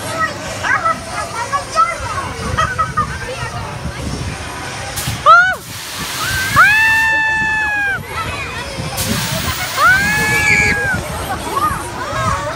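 Riders on a tower ride shrieking in long held screams, one after a falling cry about five seconds in and another near ten seconds. Each comes with a loud burst of hiss, over steady crowd chatter.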